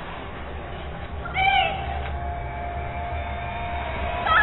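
Trailer sound design: a steady deep drone, a short wavering high cry about a second in, then a single held tone.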